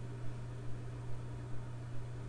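Room tone between sentences: a steady low hum with a faint hiss underneath.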